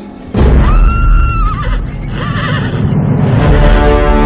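A horse whinnying twice, each call ending in a wavering trill, set over a sudden deep boom and loud film music.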